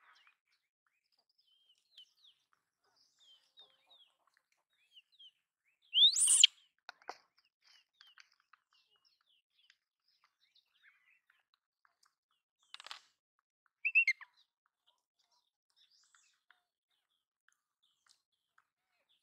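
Outdoor chirping: faint, scattered short high chirps, with a louder high call sliding upward about six seconds in and another short high call near fourteen seconds.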